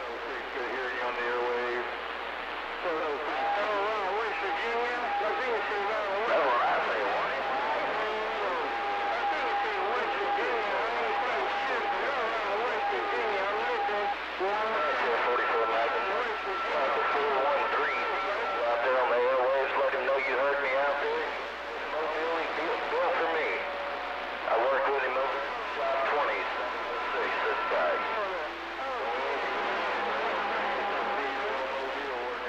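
CB radio receiver playing voices from transmissions over a steady hiss of static, with steady whistling tones (heterodynes) running through much of it.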